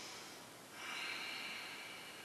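A person's long, faint breath: a soft hiss of air that starts about a second in and slowly tails off, taken while holding a standing yoga pose.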